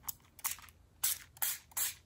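Small plastic pump spray bottle spritzed about five times in quick succession: short hissing puffs a fraction of a second apart.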